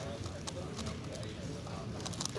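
Rapid irregular clicking and clacking of a plastic JP Galaxy Megaminx V2-M's faces being turned fast during a timed speedsolve, with people talking faintly in the background.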